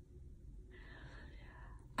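A woman's faint, breathy vocal sound, lasting about a second in the second half, in an otherwise quiet pause between her words.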